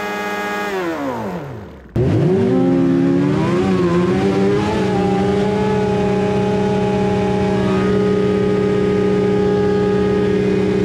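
Can-Am Maverick X3 XRS side-by-side's turbocharged three-cylinder engine during a tyre burnout. For the first two seconds the revs fall away. Then the sound cuts to the onboard microphone, where the engine is held at high, steady revs with the wheels spinning, the pitch wavering briefly before settling.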